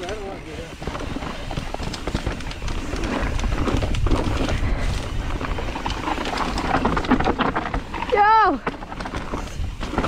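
Mountain bike descending a dirt trail: tyres rolling over the dirt and the bike rattling, heard as a noisy rumble with small clicks that grows louder about three seconds in. A short vocal exclamation rises and falls in pitch a little past eight seconds.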